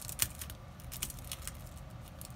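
Light clicks and taps of trading cards being handled by hand on a playmat, the sharpest click just after the start.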